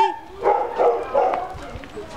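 A dog barking a few short times, with a person's voice in the background.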